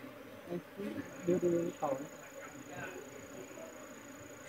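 Honeybees buzzing around an open hive box as its comb frames are handled, a steady hum with a few louder swells in the first two seconds.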